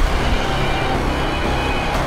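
A motorbike engine running as the rider sets off, a dense rush of engine noise over background music.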